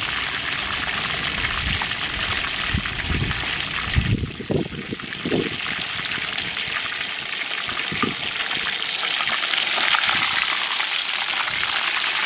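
Whole tilapia deep-frying in hot oil in a steel cowboy wok: a steady crackling sizzle that dips briefly about four seconds in.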